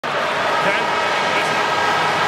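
Large stadium crowd: a steady hubbub of many voices.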